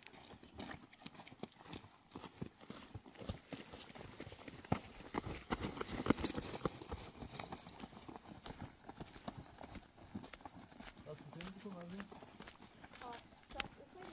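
Footsteps of several people walking on dry, stony dirt ground: an irregular run of short scuffs and clicks, busiest around the middle.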